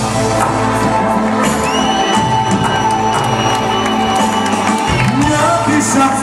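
Loud live band music played through a concert hall's sound system, with a drum beat and a long held synth-like note, while the audience cheers and shouts over it.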